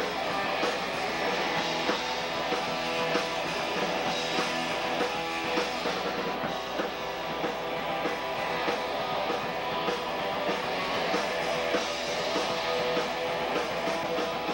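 Live punk rock band playing: electric guitars strummed over a drum kit, as picked up by a camcorder's microphone.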